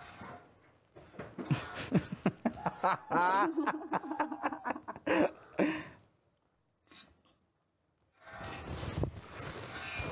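A farm animal bleating, a quavering call about three seconds in, among rustling and handling sounds in the hay. The sound drops out for about two seconds before background noise returns near the end.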